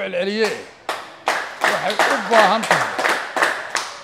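Several people clapping in applause, starting about half a second in, while a man keeps speaking underneath.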